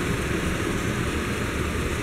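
Steady hiss with a low rumble from pans cooking on a gas stove.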